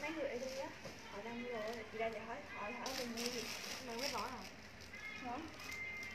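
Indistinct voices talking quietly, softer than the main speaker's nearby talk, with no clear words.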